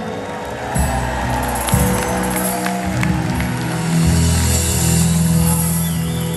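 Live concert music: an acoustic guitar song over sustained bass notes that change every second or so, as heard from the audience in a theatre hall.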